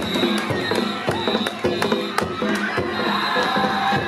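Danjiri festival music from the float, drum and gong strikes with a steady high tone over it, mixed with shouting from the pulling team and the crowd.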